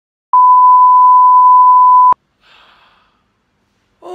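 Test-card reference tone: one loud, steady beep lasting just under two seconds that cuts off with a click, followed by a faint short noise.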